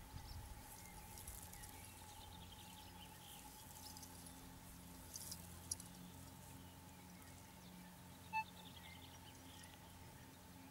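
Quiet metal-detector audio during sweeping: a faint steady tone throughout, then a single short high beep about eight seconds in as the coil passes a target, with a few faint chirps.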